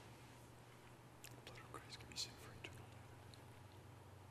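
Near silence over a low steady hum, with a few faint short clicks and soft hisses between about one and three seconds in: a priest's whispered private prayer at Communion and small sounds of handling the chalice.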